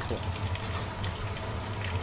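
Food frying in hot oil in a wok, a steady sizzle with faint crackles over a low steady hum.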